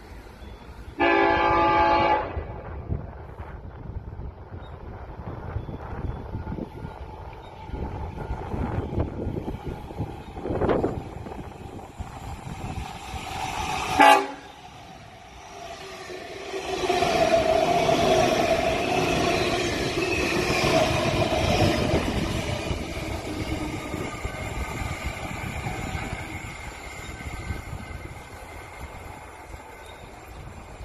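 Tilt Train sounding its horn on approach: one long blast about a second in, then a short, sharp toot just after 14 s. From about 16 s the train passes at speed with a loud rumble and a held mid-pitched tone, fading away near the end.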